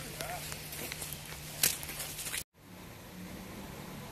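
Outdoor background noise of someone walking on a gravel path, with faint footsteps and a single click about a second and a half in. The sound breaks off into a brief moment of silence about two and a half seconds in, then resumes as a steady outdoor noise bed.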